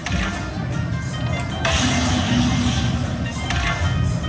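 Dragon Link slot machine's bonus-feature music and game sound effects. A free spin plays out, with a louder burst of sound and a held tone about one and a half seconds in as a new bonus coin lands on the reels.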